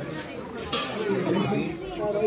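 Voices talking and chattering in a large room, with one short sharp sound about a third of the way in.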